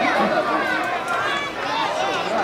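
Several voices shouting over one another during a football match: players calling on the pitch and a small stadium crowd.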